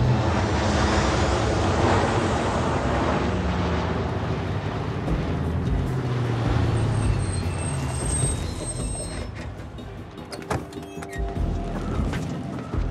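Film soundtrack of street traffic at a busy curb, vehicles passing, mixed with a music score; a loud rushing swell in the first few seconds, then steadier, with a run of sharp clicks and taps near the end.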